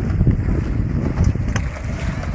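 Stunt scooter wheels rolling on asphalt with wind rumbling on the microphone, and a sharp click about one and a half seconds in.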